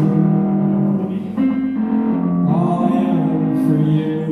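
A song performed live, led by guitar, with a voice singing held notes over the chords.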